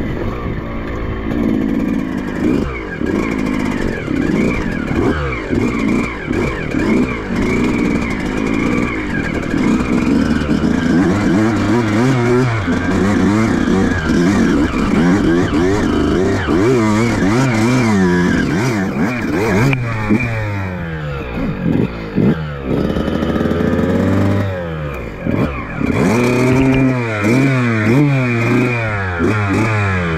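Yamaha YZ125 two-stroke single-cylinder dirt bike engine revving up and down without pause as it is ridden over rough, rocky ground, the pitch rising and falling every second or two.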